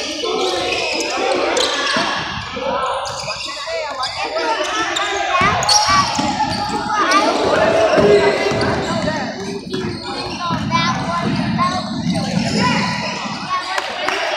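A basketball bouncing on a hardwood gym floor during a game, amid players' voices, all echoing in a large gymnasium.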